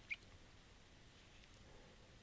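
Near silence: faint room tone, with one very brief faint blip just after the start.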